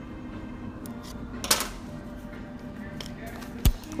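Quiet hand-work sounds over a steady low hum: a brief scrape about a second and a half in, then a sharp knock near the end as a hand bumps the camera.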